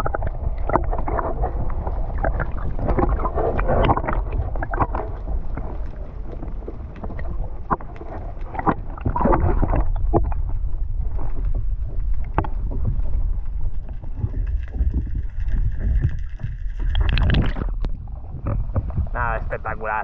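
Sea water against an action camera held just under the surface: a muffled low rumble with many small splashes and clicks. A louder splash comes near the end as the camera comes back out of the water.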